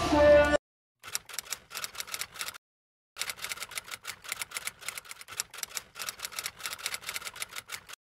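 Intro music cuts off about half a second in. A typewriter sound effect follows: rapid keystroke clicking in two runs, a short one, then after a half-second pause a longer one.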